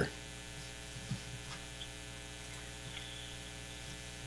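Steady electrical mains hum in the recording, with its evenly spaced overtones, and a faint brief bump about a second in.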